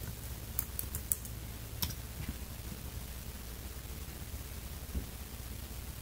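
Typing on a MacBook Air's keyboard: a quick run of light key clicks in the first two seconds, then a single tap near the end, over a low steady hum.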